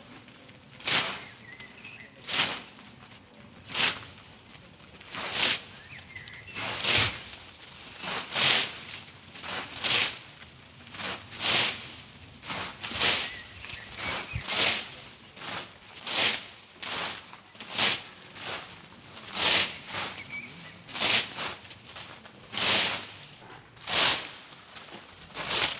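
A long-handled pruning hook slashing into hedge foliage, a swishing cut through the leaves about every one and a half seconds.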